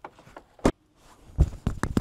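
A sharp click, then, about a second and a half in, a low thump and a few quick clicks as the van's door latch releases and the door is pulled open, heard from inside the vehicle.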